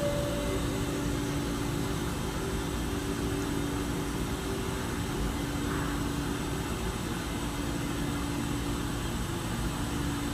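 Steady hum and hiss with a low, unchanging tone from an OTIS hydraulic elevator in motion, the car travelling to answer a lit hall call.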